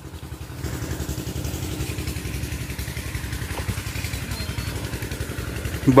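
Irrigation pump engine running steadily by the river, a low rumble with a rapid, even pulse.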